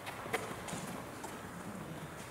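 A few light, sharp knocks at irregular spacing over faint room hiss.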